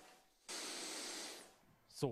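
A steady hiss about a second long, starting abruptly about half a second in and fading out, with near silence either side.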